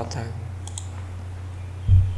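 Two sharp computer-keyboard clicks about two-thirds of a second in, then a louder low thump near the end, over a steady low electrical hum.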